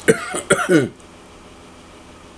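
A man coughing, a few quick coughs in the first second, followed by quiet room tone.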